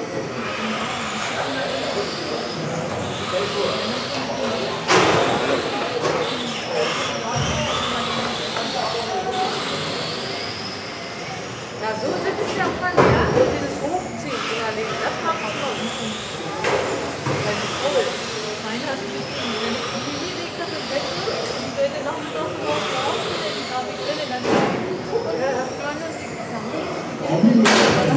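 Electric 1:10 RC touring cars racing on an indoor track: high-pitched motor whines that rise and fall as the cars accelerate and brake, with a few sharp knocks along the way.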